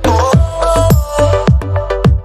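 Electronic dance music with a steady beat, about three a second, under held synth chords and a melody.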